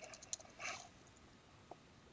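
A few faint, spaced-out computer keyboard keystrokes as periods and spaces are typed, with a brief soft noise about half a second in.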